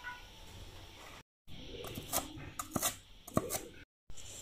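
Kitchen cleaver and steel bowl knocking against a wooden chopping board while chopped Chinese onion (kujiao) bulbs are handled. The second half holds several sharp, irregular knocks.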